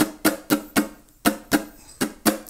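Ukulele (standard C6 tuning) strumming chords in the island strum pattern: short, crisp strokes about four a second, each dying away quickly, with a few beats skipped in the down, down-up, up-down-up pattern.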